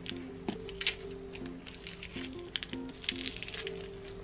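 Soft background music with a gentle melody of held notes. Light clicks and taps of plastic paint markers being handled sound over it, several close together after the middle.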